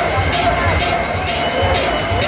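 Electronic dance music from a club sound system, played loud with a steady beat of kicks and hi-hats, and crowd voices mixed in.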